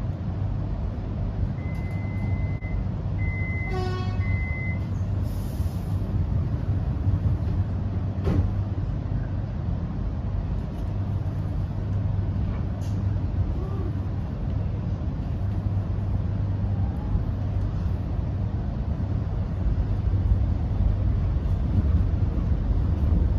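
Interior of an X'Trapolis electric train standing still, with the steady low hum of its onboard equipment. A few seconds in come three high electronic beeps and a short tone. Near the end the sound grows louder as the train moves off.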